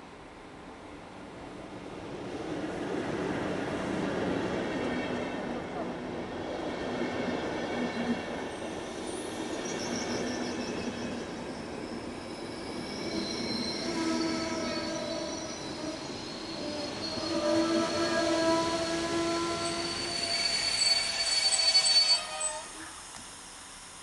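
A passenger train hauled by a Škoda class 163 electric locomotive runs into the station. The rumble and wheel noise build up as it draws near. Once the coaches are passing, several steady high squealing tones set in as the train slows, loudest near the end.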